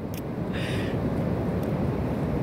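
Ocean surf rushing in on the beach, mixed with wind buffeting the microphone: a steady low rumble that grows slightly louder.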